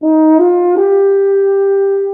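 Euphonium playing three rising notes up into its high register, the third a long held note.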